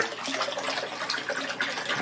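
Steady running and splashing of pumped water circulating through a home-built IBC aquaponics system.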